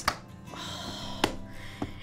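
Soft background music with a few light clicks and taps from a cardboard pen box being handled on a table: one at the start, a sharper one a little past halfway, and a small one near the end.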